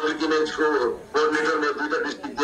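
A man speaking into a microphone, his voice amplified, with a brief pause about a second in.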